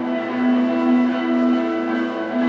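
Live rock band playing the instrumental opening of a song: electric guitars and bass holding sustained notes that swell and fade in a steady pulse.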